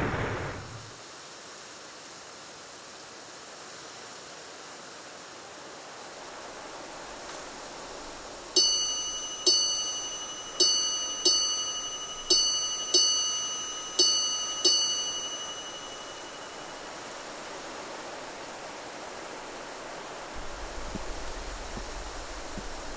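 A small, high-pitched bell struck eight times over about six seconds, each strike ringing and fading, over a faint steady hiss. A low rumble comes in near the end.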